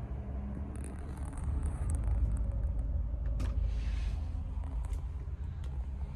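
A low, steady rumble that grows louder about two seconds in, with a few faint clicks over it.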